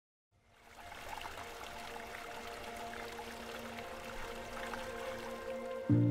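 Water pouring from a stone spout into a pool, splashing steadily, fading in over the first second, under soft music with a few held notes. Right at the end a louder music entry with a deep bass note comes in.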